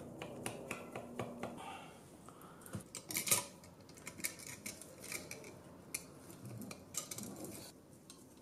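Telescope mount's plastic housing and small metal parts being handled and worked with a screwdriver: irregular clicks, taps and rattles, loudest a little after three seconds.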